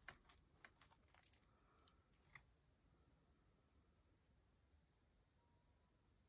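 Near silence: room tone, with a few faint light clicks and taps in the first couple of seconds.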